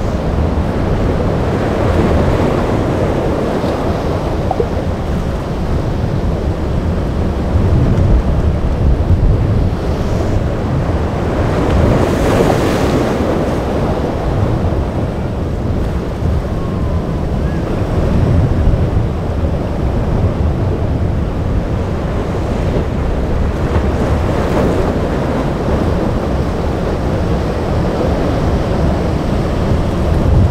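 Rough surf breaking and rushing in an inlet, with wind buffeting the microphone. Louder crashes of breaking waves come every few seconds.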